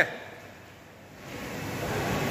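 Even background rush of noise in a large tiled building, with no distinct events. It drops quieter about half a second in and swells back up near the end.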